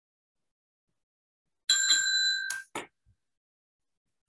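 A timekeeper's bell ringing to signal that the one-minute preparation time is up: one ring of under a second that cuts off abruptly, followed by two quick shorter rings, heard over a video call.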